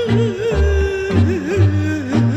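Old Romanian lăutărească music: a woman's voice drawing out a wordless, heavily ornamented melisma with a wide wavering vibrato, over a steady rhythmic bass accompaniment.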